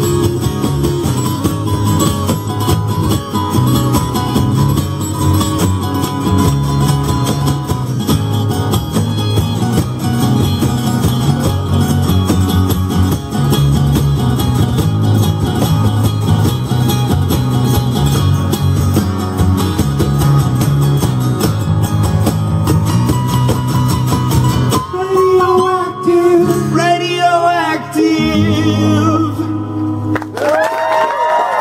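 Three acoustic guitars strumming a song together in a steady, full rhythm. About 25 seconds in the strumming thins out and a wavering sung voice rises over lighter guitar.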